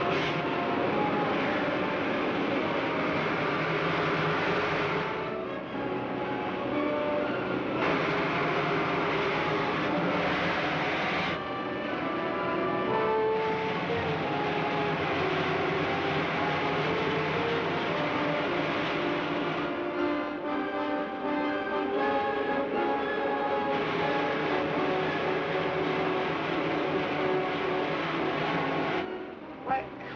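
Rocket-engine sound effect from a 1950s film soundtrack, a steady rushing noise that drops away and returns several times, mixed with dramatic orchestral score.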